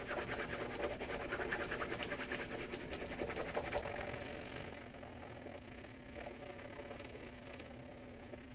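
Cloth rubbing briskly over the upper of an Asics Ultrezza 2 football boot, wiping off leftover shoe cream with rapid strokes. The rubbing is loudest in the first half and turns softer about halfway through.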